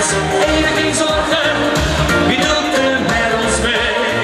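Loud live reggae-beat pop music over a club PA, with a sung melody over a steady beat.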